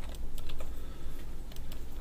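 Scattered light clicks of a computer mouse and keyboard during CAD work, several short clicks at irregular intervals over a low steady hum.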